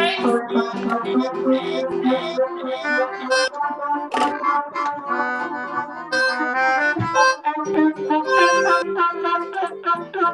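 Several instruments played all at once as loudly as possible over a video call: a melodica, a small accordion, a trumpet and a piano among them, in a jumble of overlapping held notes that shift about.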